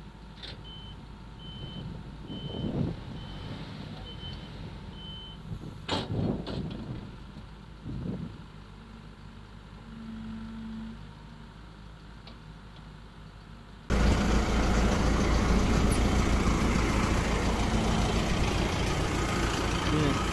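Heavy machinery running at a distance, with a reversing alarm beeping evenly for about five seconds and a few sharp knocks around six and eight seconds in. About fourteen seconds in, a tractor engine comes in loud and close, running steadily.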